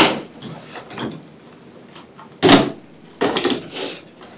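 Handling noise: a sharp knock right at the start, a loud thump about two and a half seconds in, and a short scraping rustle near the end.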